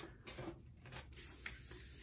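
Faint rustling and scratching of a diamond-painting canvas and its clear plastic cover being tugged and smoothed by hand, with a few soft ticks.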